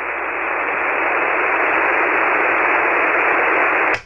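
Shortwave receiver hiss on 40-metre single sideband: steady band noise heard through the receiver's narrow voice passband while no station is transmitting. It swells slightly in the first second, then holds level.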